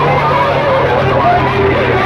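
Loud music played through a tall stack of horn loudspeakers, with a steady bass note under a wavering melody line.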